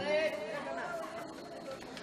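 Faint murmuring voices in a large hall during a pause in chanted Quranic recitation, after the echo of the last chanted note fades over the first half-second.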